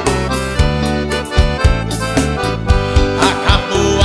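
Forró band music in an instrumental passage: accordion playing chords and melody over a steady bass line and a regular drum beat.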